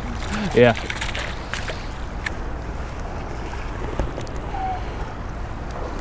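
Steady rush of a shallow, rocky stream's current flowing over stones.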